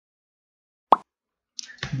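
Dead silence, then a single short pop about a second in; a man's voice starts near the end.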